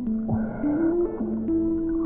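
Background music: sustained synthesizer notes held and stepping between a few pitches, with a short rush of noise about a quarter of a second in.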